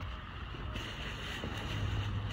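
Low wind rumble on the microphone, with thin plastic carrier bags full of clothes rustling from about a second in as a hand reaches into them.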